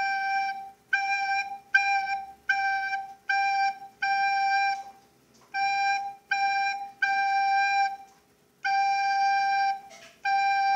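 White plastic recorder playing a simple tune on the single note G, a string of separately tongued notes, some short and some held longer, broken by a couple of short pauses.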